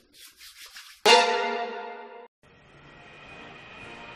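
Hands rubbing lotion together briskly, a rhythmic swishing of about five or six strokes a second. About a second in, a loud musical chord strikes and fades away, cuts off suddenly just past halfway, and a low rumbling noise then swells in.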